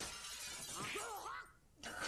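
Sound effect from the anime soundtrack: a sudden crash whose noisy clatter sets in at once and dies away over about a second and a half, with a character's short cry in the middle of it. A second, similar noisy burst starts just before the end.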